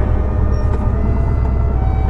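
1994 Harley-Davidson Sportster 1200's air-cooled Evolution V-twin with an aftermarket exhaust pipe, idling steadily at a stop.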